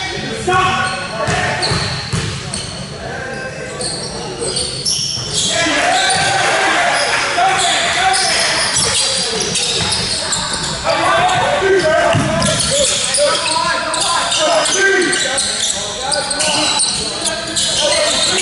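Basketball game on a hardwood court in a large hall: the ball bouncing as it is dribbled, with players' and spectators' voices calling out throughout.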